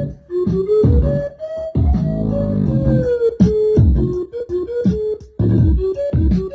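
Music played loud through Sony MHC-RV8 speakers, with deep bass notes that drop in pitch, a keyboard-like melody and a held chord in the middle.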